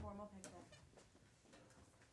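Near silence in a room: a faint voice briefly at the start, then a single short click about half a second in.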